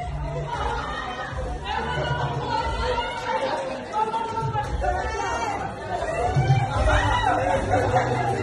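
Several people talking and chattering at once in a reverberant hall, their voices overlapping so that no single speaker stands out.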